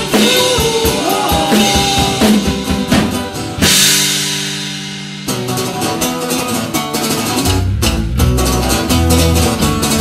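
Live rock band playing with electric guitar, acoustic guitars and a drum kit. About four seconds in a cymbal crash and a held chord ring out and fade, then the band comes back in with busy drumming and heavy low end.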